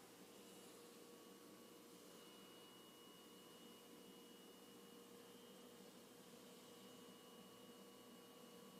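Near silence: faint room tone with a steady, very faint hum.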